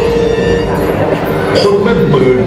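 A man's voice narrating in Thai over stadium loudspeakers, with a long steady note held underneath.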